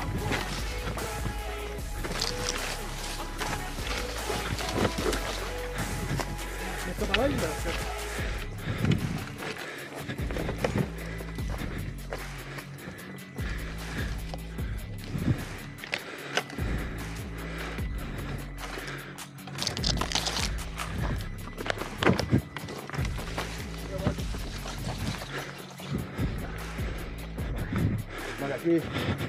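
Background music over the ride, with irregular knocks and rattles from an electric unicycle rolling over the rocks of a stony trail, most of them after about eight seconds in.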